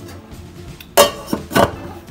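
A stainless steel pot lid knocking against its steel pot twice, about half a second apart, each knock sharp with a brief metallic ring.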